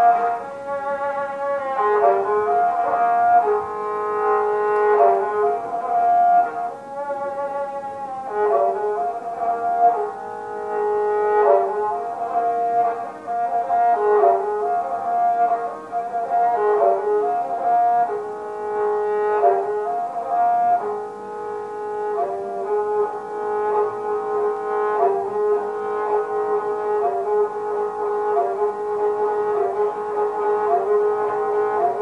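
A bowed string instrument, held upright on the lap, played solo. It gives long sustained notes over a steady lower drone string, with the melody moving between a few pitches every second or two.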